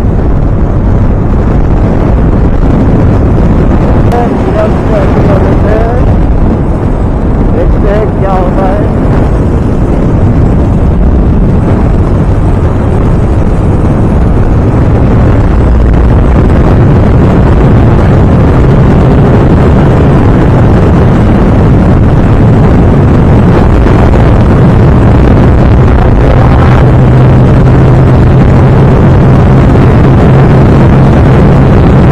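TVS Apache RTR 160 2V motorcycle's single-cylinder engine running at full throttle as the bike accelerates toward top speed, mixed with heavy wind noise on the camera microphone. The engine note settles into a strong steady drone in the second half as speed passes 100 km/h.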